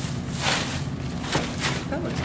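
Dry straw rustling and crackling as handfuls are pulled apart and pressed down into a plastic tote, along with the rustle of a plastic garbage bag. The crackles come in a few surges, the clearest about half a second in and near the end.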